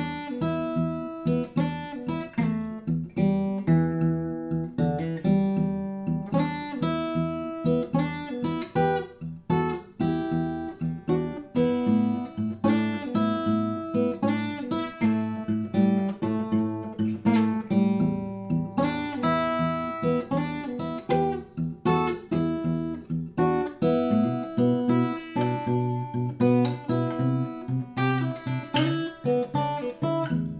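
Jean-Marc Burlaud solid-wood dreadnought acoustic guitar (spruce top, rosewood back and sides) played fingerstyle: a continuous passage of fingerpicked notes over bass lines, each note ringing on.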